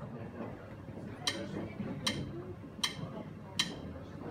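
A count-in before the band starts: four sharp, evenly spaced clicks, a little under a second apart, over low room noise.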